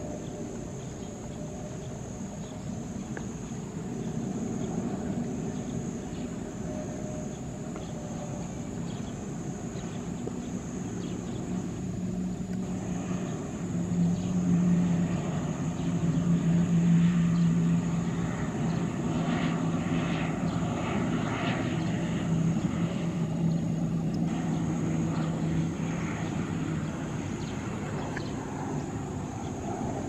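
Twin-turboprop airliner on final approach to land, its engines and propellers droning with a steady low hum. The hum grows louder about halfway through, is loudest a few seconds later, and eases off near the end.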